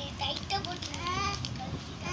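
A baby babbling, with one longer high-pitched vocal sound about a second in, over light rustling and clicking of paper pages as a notebook is handled.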